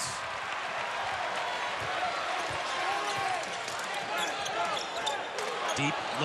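A basketball dribbled on a hardwood court over the steady murmur of an arena crowd.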